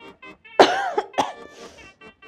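A person coughing: one loud, harsh cough about half a second in, then two shorter coughs close together about a second in.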